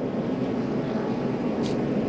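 NASCAR Cup stock cars' V8 engines running at speed on the track, a steady drone.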